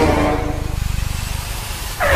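Small engine of an auto rickshaw running with a rapid, even low putter as it drives up. A higher pitched tone fades out in the first second.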